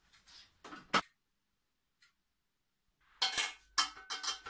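A single sharp click about a second in, then clattering metallic knocks near the end as the Thermomix's stainless-steel mixing bowl is handled and lifted out of its base. No grinding motor is heard.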